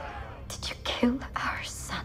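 A person whispering in short breathy phrases, over a steady low hum.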